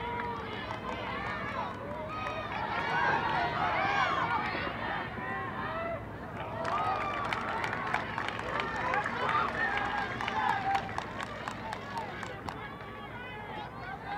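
Several voices shouting and calling out at once across a soccer field, players and spectators overlapping, loudest in the middle. A run of sharp clicks comes in the second half.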